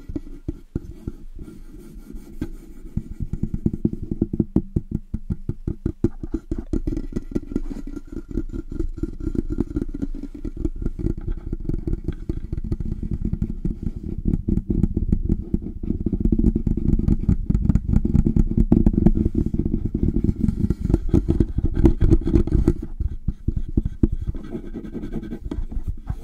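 Hands rubbing and cupping the foam windscreen of a Blue Yeti microphone fast and close up, a dense muffled rumble of rapid strokes that gets louder about two-thirds of the way through.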